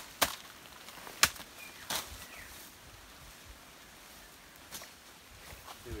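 Three sharp chops of a machete in the first two seconds, the loudest about a second in.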